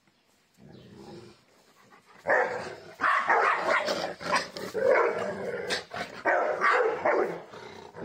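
A Rottweiler and a small white dog squabbling, with growling and barking. After a quiet first two seconds, the dogs break into loud, repeated outbursts that go on in waves.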